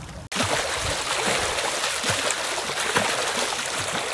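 Water splashing steadily as a swimmer swims freestyle in a pool, the arm strokes and kicks churning the surface. The sound comes in abruptly a moment in.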